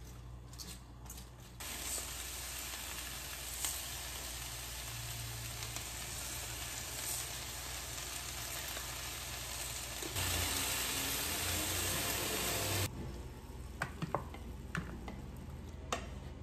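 Stir-fry of cabbage, carrot and chicken sizzling in a nonstick frying pan while being stirred with a spatula. The sizzle starts about two seconds in, grows louder around ten seconds, and cuts off suddenly a few seconds later, followed by a few sharp clicks of the spatula on the pan.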